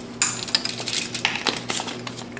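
Metal kitchen utensils clinking and scraping: a measuring spoon against a stainless steel mixing bowl and a fork working on a foil-lined baking sheet, in a series of short, irregular clicks.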